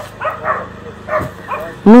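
Dogs barking: a few short barks and yips in the background.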